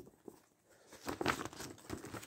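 Sheet of paper rustling and crinkling as a cross-stitch chart is handled and opened out, the rustles picking up from about a second in after a near-quiet moment.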